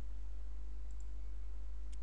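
Steady low electrical hum on the recording, with a few faint computer-mouse clicks about a second in and again just before the end.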